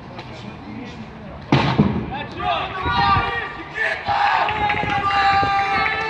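A single sharp bang about a second and a half in, followed by loud shouting voices with long held calls.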